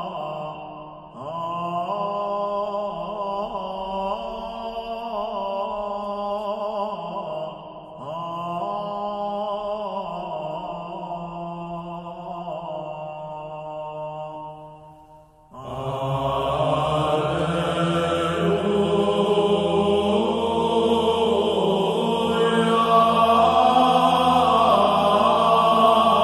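Liturgical chant sung in long, sustained phrases with brief pauses between them. About 15 seconds in, a louder, fuller passage begins suddenly.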